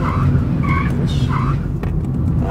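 A car braking hard from speed, its tyres squealing in a few short chirps over a steady low rumble of engine and road.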